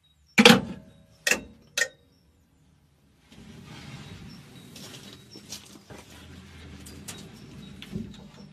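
Telephone booth sounds: three sharp clunks in quick succession in the first two seconds. Then, after a short pause, steady handling and rattling noise with scattered clicks through the rest.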